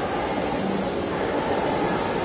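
Steady, even hiss of noise on a video-call audio feed, with no voice in it.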